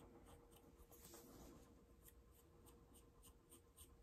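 Very faint, quick repeated scratching of a spoolie eyebrow brush's bristles stroking through eyebrow hairs.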